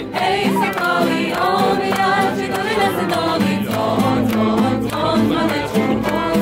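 A group of voices singing a Polish song together, led by a woman, with acoustic guitar accompaniment.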